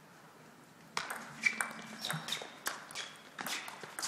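Table tennis rally: the celluloid-type ball clicks sharply off the bats and the table in quick succession, starting about a second in after a near-quiet pause.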